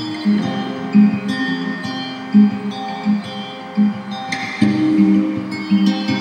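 Background music led by a plucked guitar, single notes picked in a steady pattern, with a fuller strummed chord a little past halfway.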